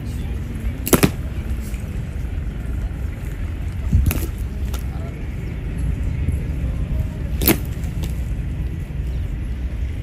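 Honor guards' boots clacking on a stone pavement as they march, a few sharp strikes several seconds apart over a steady low rumble.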